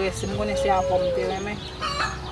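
A woman speaking, with a long drawn-out animal call held behind her voice that falls away after about a second.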